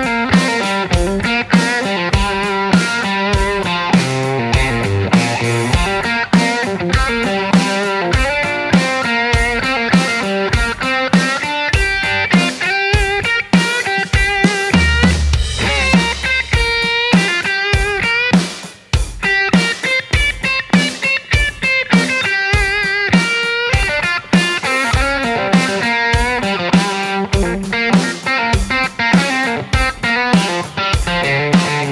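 Electric guitar, a Telecaster-style solid body, playing lead lines with string bends and vibrato in time over a drum-kit groove, the drum hits falling about twice a second. The playing thins out briefly about two-thirds of the way through.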